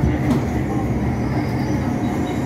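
Steady running rumble of an MTR M-Train heard from inside the carriage as it travels at speed, a constant low noise of wheels on rail with a low hum.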